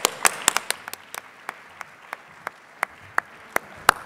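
Audience applauding, dense at first and thinning out over the seconds, with a few louder single claps close by in the second half.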